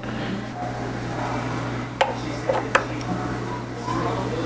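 Small metal parts clicking and knocking as a stepper motor is fitted onto a Sherline mill, with three sharp clicks in the second half over a steady low hum.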